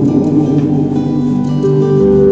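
Live acoustic guitar accompaniment with a melody of long, slightly wavering held notes over it, in an instrumental gap between sung lines.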